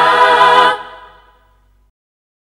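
A cappella singing, no instruments: one vocal note is held for under a second, then dies away into silence.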